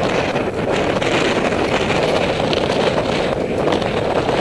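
Steady wind rush on the microphone of a camera on a moving bicycle, mixed with the rolling noise of the ride.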